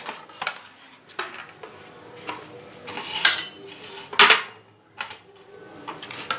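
Stainless steel rolling pin clinking and knocking against a steel plate as parotta dough is rolled out: a string of irregular sharp metallic taps, one with a brief ring, the loudest a little after four seconds in.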